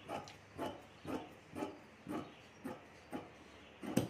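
Large tailoring shears cutting through trouser fabric on a table, snipping steadily about twice a second; the snip near the end is the loudest.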